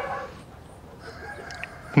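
Faint background of farmyard chickens, with a rooster crowing.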